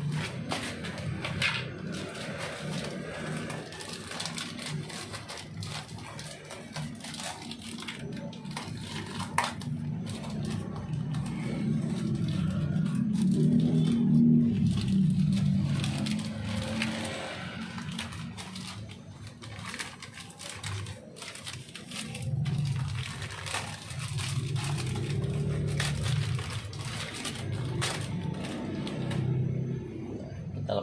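Plastic packaging crinkling and rustling as a chrome fuel-tank cover is unwrapped and handled, with scattered small clicks and scrapes over a low background rumble.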